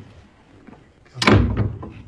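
A door slammed shut once, loudly and suddenly, a little over a second in, with a short ring-out after the bang.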